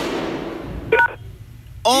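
A click over the phone line followed by fading hiss, then about a second in a short two-tone telephone beep: the voicemail's signal to start recording the message.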